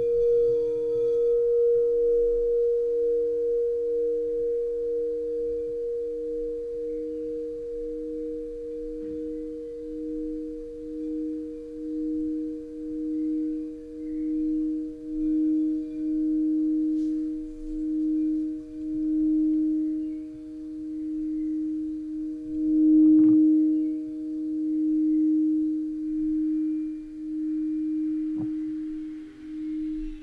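Alchemy crystal singing bowls ringing in two steady, sustained tones while a wooden mallet is rubbed around a bowl's rim. From about a third of the way in, a slow wavering pulse grows in the sound. There is a light knock a little past two-thirds of the way, and the higher tone fades near the end.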